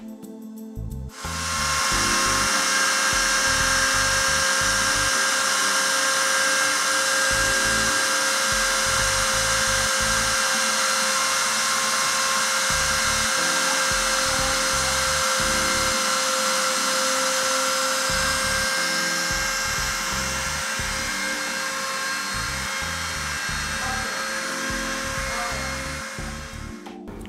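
Rotary tool spindle on a homemade CNC engraver spinning a fine bit into a metal plate: a steady high-pitched whine that starts about a second and a half in. Background music plays under it.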